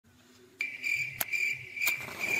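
Insects chirping in a pulsing high trill that starts about half a second in, with two short clicks later on.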